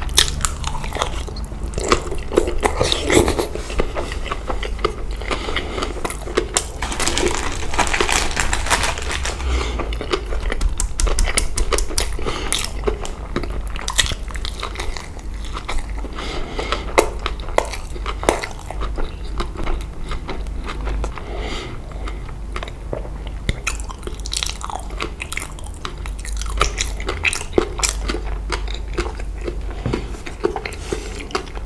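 Close-miked chewing of a mouthful of spicy green papaya salad with rice noodles and shrimp: wet crunching and many small mouth clicks, thickest in the first half, over a steady low hum.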